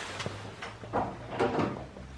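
A hand tapping on a horse's purple plastic hoof boot, several light hollow knocks.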